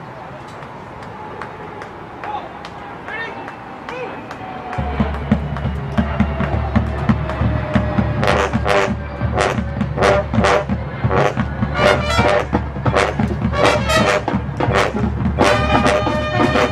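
Drum and bugle corps brass and percussion playing on an open field. A soft held brass note opens, the low brass enters heavily about five seconds in, and from about eight seconds regular drum strokes and fuller brass chords build to the loudest playing near the end.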